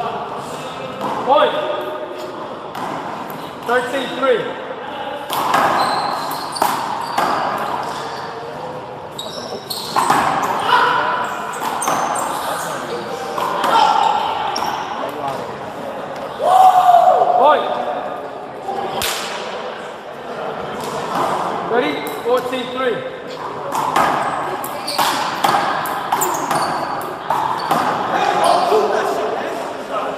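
A handball rally: the small rubber ball strikes the court walls and floor again and again in sharp slaps that echo in the enclosed court, mixed with players' voices.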